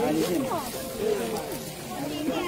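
Women's voices talking.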